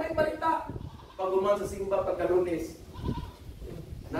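A man's voice speaking in a raised, high-pitched, drawn-out way, in several phrases with short breaks between them.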